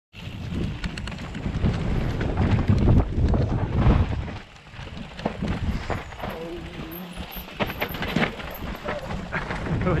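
Mountain bike riding down dirt forest singletrack: wind rumbling on the microphone, tyres rolling over dirt and roots, and the bike's frequent rattles and knocks over the bumps.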